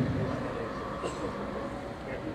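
Low, steady outdoor background noise during a pause in a man's speech over a handheld microphone; the tail of his voice dies away at the very start.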